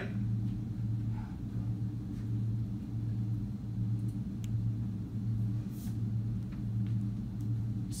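Steady low room hum with a few faint clicks and taps.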